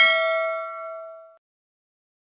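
A single bright bell ding, a notification-bell sound effect, ringing with several overtones and fading out within about a second and a half.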